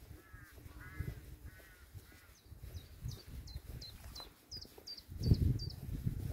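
Wild birds calling. Early on, about five short, rough calls come roughly half a second apart. Then, from about halfway, a small bird gives a quick run of about ten high, down-slurred notes. Underneath are the walker's footsteps on the dirt path, which grow louder near the end.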